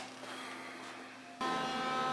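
Faint room hiss, then from about one and a half seconds in several steady bell-like tones held together.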